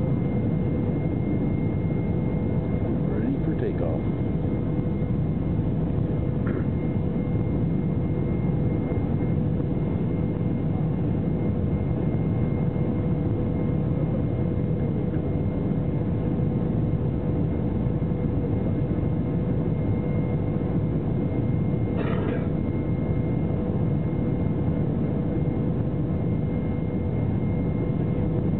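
Airliner cabin noise on the ground: the aircraft's engines and air systems running with a steady hum and a constant thin whine that does not change.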